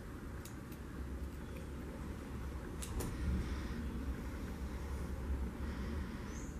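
Scissors snipping the crochet yarn end: a few short faint clicks, the sharpest about three seconds in, over a low steady rumble.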